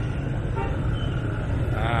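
Scooter and motorbike traffic in slow city congestion: a steady low engine rumble all around, with a brief horn toot about half a second in.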